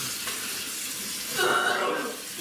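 Water running from a tap into a sink, a steady rush. A person's voice rises briefly over it near the end.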